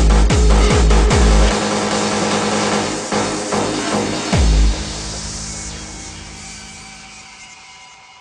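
Hardstyle dance track. The distorted kick drum beats about two and a half times a second and stops about one and a half seconds in. A single kick lands near the middle, then the music thins and fades down into a breakdown of held synth tones.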